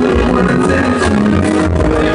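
Live dub-jazz band playing loudly: held trumpet notes over a heavy bass line, with drum hits.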